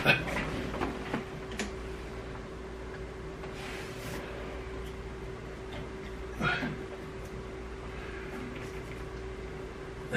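A steady low hum with a faint constant tone, broken by a few faint knocks and rustles of handling.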